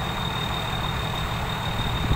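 A combine harvester's engine running steadily, a low, even drone with a thin steady high tone above it.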